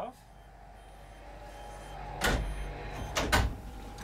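Low hum of a small driverless electric shuttle bus pulling away, growing louder. Two short rushing noises come about two and three seconds in.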